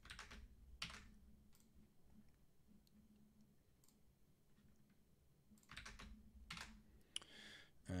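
Near silence with a few faint computer keyboard and mouse clicks, more of them near the end.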